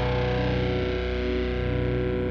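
Instrumental music with sustained, held chords at a steady level.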